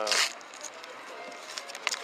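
A man's voice trailing off mid-word, then faint outdoor background noise with a single sharp click shortly before the end.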